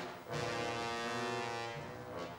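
Orchestral ballet music with brass to the fore, playing one long held chord that sets in just after the start and breaks off near the end.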